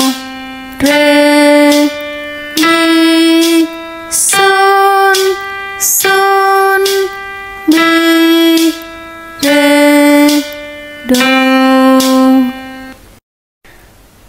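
Eight sustained instrument notes of about a second each, playing the pitch exercise C–D–E–G, G–E–D–C (đô, rê, mi, son up and back down), each note steady in pitch.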